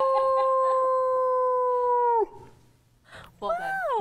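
A person howling like a wolf: one long, steady held howl that cuts off a little after two seconds, then a shorter howl falling in pitch near the end.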